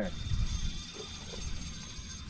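Tsunami SaltX 4000 spinning reel working under the strain of a hooked tarpon: a steady mechanical whirr from the reel as line is worked against the drag, with a low rumble of wind underneath.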